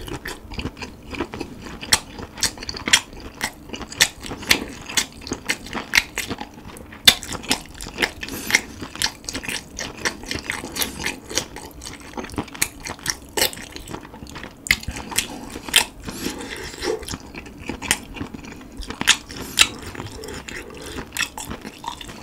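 Close-miked chewing of cooked webfoot octopus: a steady, irregular run of sharp mouth clicks and smacks, several a second.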